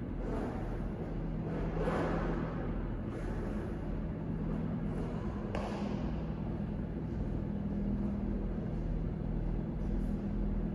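A steady low hum over an even rushing background noise, with a couple of soft swishes, one about two seconds in and one about five and a half seconds in.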